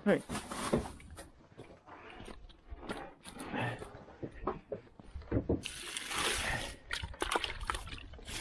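Water sloshing in a 2-gallon plastic heated water bucket as it is carried and handled, with knocks from the bucket. The water is then dumped out onto hay in a short rush about six seconds in.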